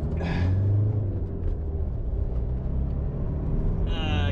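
Diesel engine of a 2021 Isuzu D-Max ute running, a steady low hum heard from inside the cab, with a sigh right at the start.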